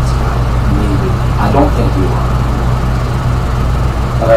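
Steady low hum and hiss under a recorded phone call, with faint speech briefly near the start and again about a second and a half in.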